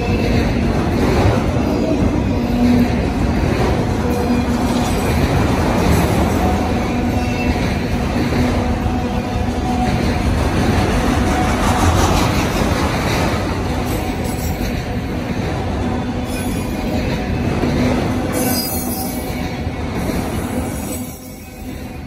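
Freight train of autorack cars rolling past at close range: a steady rumble and clatter of steel wheels on rail, with held squealing tones from the wheels. The sound dips briefly near the end.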